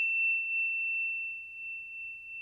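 A single high, bell-like ding ringing on as one steady, pure pitch and slowly fading.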